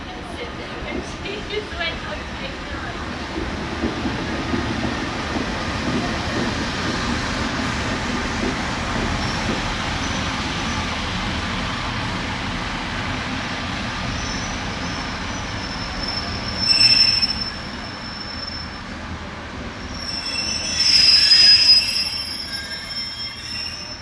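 Northern Class 144 Pacer diesel multiple unit running into a station and slowing, with a steady engine and rail rumble. High-pitched squeals come in about two-thirds of the way through and again, louder, near the end as it slows.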